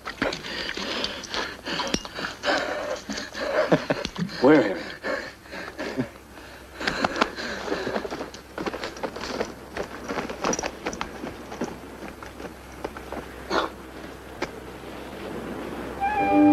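Men's wordless voice sounds, grunts and hard breaths, mostly in the first half, mixed with short scuffs and knocks of scrambling over rocks.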